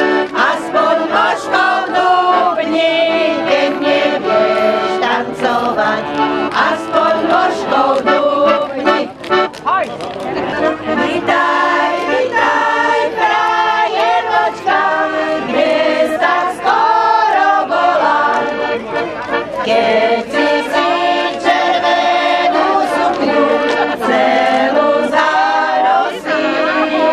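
A group of women singing a song in Slovak together, accompanied by a piano accordion with a steady rhythmic pulse.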